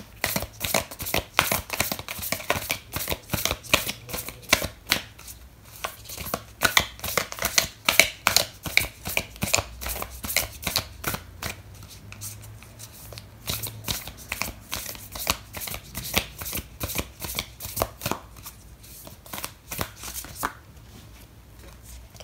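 A deck of oracle cards being shuffled by hand: a quick, uneven run of card flicks and slaps, several a second, that stops shortly before the end.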